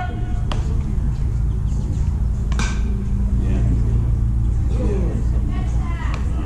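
Ballfield ambience with a steady low rumble throughout. There is one sharp smack about two and a half seconds in, and faint distant voices near the end.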